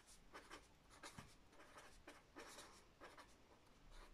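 Marker pen writing on paper: a faint run of short scratching strokes as words are written out by hand.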